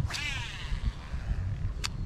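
A cast with a light spinning rod: a quick swish, then fishing line whirring off the reel spool in a short, wavering whine. Near the end a single sharp click, the reel's bail snapping shut. Wind rumbles on the microphone throughout.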